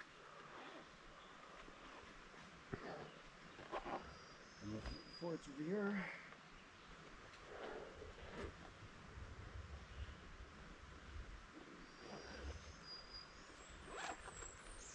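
Faint rustling and a few light knocks as hikers handle their gear and packs, with a couple of short high chirps and a brief spoken word partway through.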